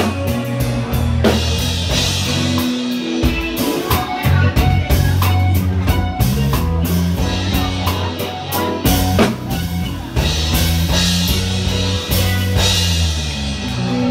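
Live band playing an instrumental passage with electric bass and electric guitar over a drum kit, with sustained bass notes moving every second or so under steady drum hits.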